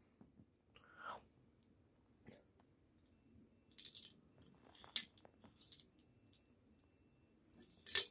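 Faint, scattered clinks and taps from an aluminium drinks can being tipped and turned in the hand, with Polo mints inside it.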